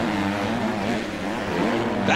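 A 250-class four-stroke motocross bike engine revving hard, its pitch rising and falling as the rider works the throttle and gears through the sand.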